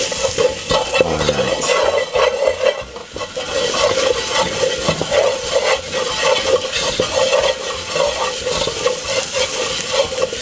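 Wooden spoon stirring and scraping chopped onion, garlic and curry powder around a non-stick pot as they fry in a little oil. The curry powder is being "burned" (toasted in the hot oil) to bring out its flavour.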